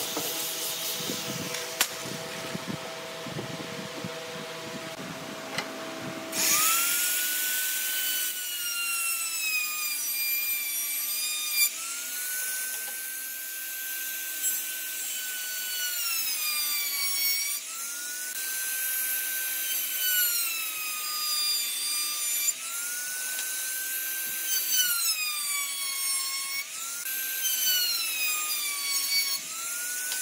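A handheld electric trim router running and cutting along the edge of a wooden board, starting about six seconds in; its high whine sags in pitch and recovers about every five seconds as it works through each pass.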